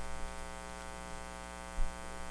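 Steady electrical mains hum with a buzz of many even overtones, picked up through the lectern microphone and sound system. A brief, soft low thump comes near the end.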